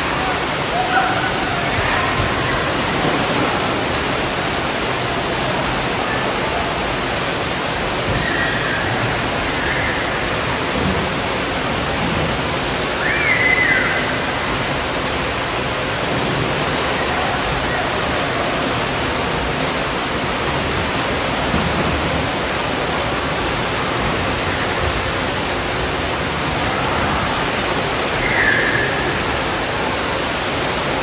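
Steady rush of water falling from an artificial rock waterfall into a pool. A few brief, distant voices rise above it now and then.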